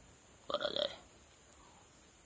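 A single short vocal sound from a man, about half a second long, starting about half a second in. It may be a throat sound such as a burp, or a clipped syllable.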